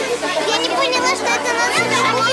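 A group of young girls talking and exclaiming at once, several high-pitched voices overlapping.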